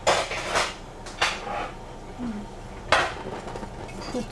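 Kitchen utensils knocking against dishes: three sharp clanks with a short ring, one at the start, one about a second in and one near the end.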